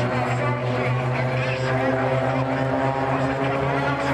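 Piston engines of a formation of propeller-driven aerobatic aircraft droning overhead. The tone is steady and its pitch drifts slowly as the planes manoeuvre.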